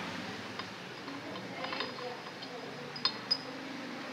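Light metallic clicks and clinks as a thin steel cover plate is fitted by hand into the housing of a VE distributor-type diesel injection pump, a few scattered small taps with two sharper clicks about three seconds in.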